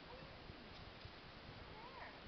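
Near silence: faint outdoor ambience with a few faint, thin chirps.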